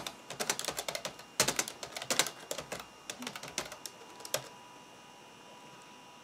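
Typing on an IBM ThinkPad 760XL laptop's long-travel keyboard: a quick run of key clicks for about four seconds, which then stops.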